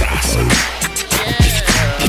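Instrumental Chicano hip hop beat: deep booming kick drums that drop in pitch, sharp snare or clap hits, and a wavering melody line over the top.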